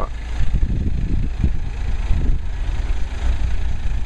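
A vehicle engine idling steadily, a low even rumble, with a single short knock about a second and a half in.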